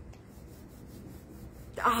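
Low, steady background noise with no distinct event, then a woman's voice saying "ah" near the end.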